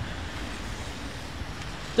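Steady hiss of rain and wind, with a low rumble of wind on the microphone.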